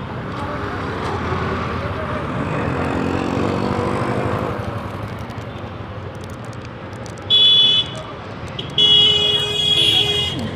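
Street traffic with a vehicle horn honking twice: a short high-pitched honk about seven seconds in and a longer one near the end. The two honks are the loudest sounds.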